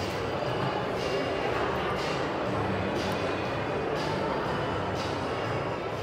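Steady ambience of a busy indoor food court: a murmur of distant voices with faint music underneath.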